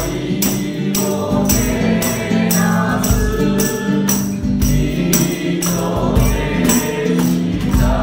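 A mixed group of voices singing a Japanese Buddhist song in a swinging three-four time, accompanied by acoustic guitar, with a tambourine struck on the beat about twice a second.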